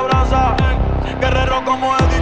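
Bass-boosted electronic dance track, with deep bass hits that fall in pitch about twice a second under steady synth notes.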